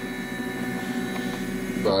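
MakerBot Replicator 2 3D printer running a print: a steady whine of several tones from its motors as the print head moves. The X axis is running without faltering after its ribbon-cable repair.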